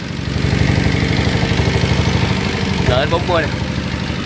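Yanmar NS40 horizontal single-cylinder diesel engine running steadily with a rapid, even chug, running smoothly and in good order.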